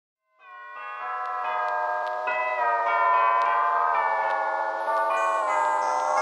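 Background music: held chords that fade in after a moment of silence and change every half second or so.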